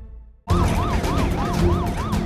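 Music fading out into a brief hush. About half a second in, an emergency vehicle siren starts in a fast yelp, its pitch sweeping up and down about three times a second over a low rumble.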